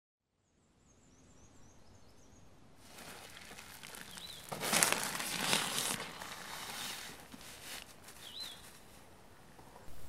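Outdoor woodland ambience fading in from silence. A bird gives a quick run of high, falling chirps near the start and two single chirps later. About halfway through comes a louder burst of rustling that lasts a second or two.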